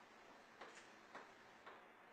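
Near silence: faint room hiss with three faint clicks about half a second apart.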